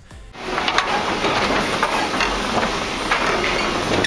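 A vehicle rolling across the loose boards and steel plates of an old steel truss bridge deck: a steady rattling rumble full of small knocks and clatters.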